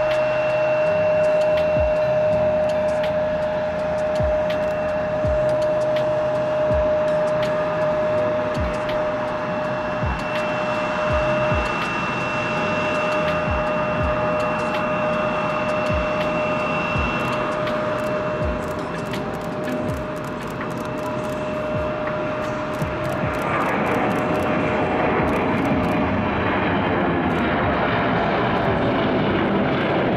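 Bombardier CRJ550 regional jet taxiing, its two rear-mounted turbofan engines running with a steady whine. About two-thirds of the way through, the whine gives way to a broader rushing jet noise.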